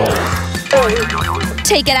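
Background music with a steady bass line, with a springy boing-like sound effect about a second in that slides down and wavers. A voice starts speaking near the end.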